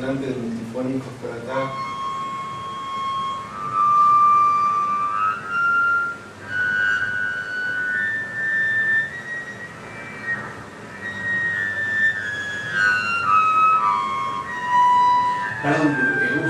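Double bass bowed in high natural harmonics: a sustained high tone that climbs step by step through a series of harmonics, then steps back down again.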